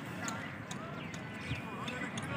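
Background chatter of several men's voices, with irregular sharp clicks scattered through it.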